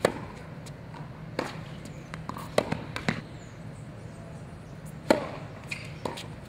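Tennis ball struck by racket strings in a baseline rally on a hard court: sharp pops every second or two. The loudest comes right at the start and again about a second before the end, with fainter hits and bounces between.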